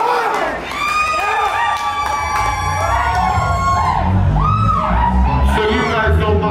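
Live deathcore band getting under way between songs: a low rumble of bass and guitar swells in about two seconds in and holds. Above it come high, wavering shouts and cheers from the crowd.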